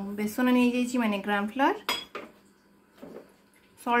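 Gram flour tipped from a steel cup into a glass bowl, with a sharp clink of metal on glass about two seconds in that rings briefly.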